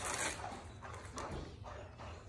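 A dog nosing and chewing at crumpled wrapping paper: the paper crinkles and rustles in a few short bursts, along with the dog's sniffing.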